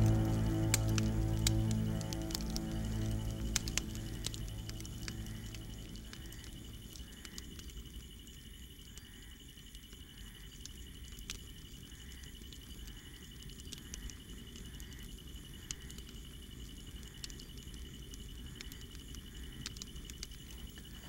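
Dramatic background music fading out over the first several seconds, leaving a campfire quietly crackling with scattered irregular pops.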